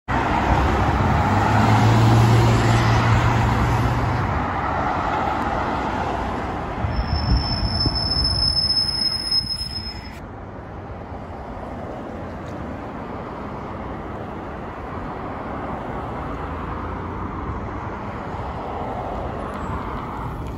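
Road traffic passing on a multi-lane street, with a low engine hum as vehicles go by. A city transit bus then passes close by with a steady high-pitched whine, and the sound drops suddenly about halfway. Quieter traffic noise follows and swells as another bus approaches near the end.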